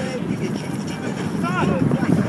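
People's voices and chatter with wind on the microphone; a short pitched call rises and falls about one and a half seconds in.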